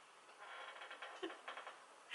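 Faint, breathy, near-silent laughter from a woman: a run of quick puffs of breath.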